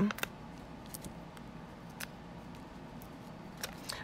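Faint paper handling: a few soft, sharp clicks and light rustling as small foam adhesive Dimensionals are peeled from their sheet and pressed onto the back of a die-cut cardstock piece.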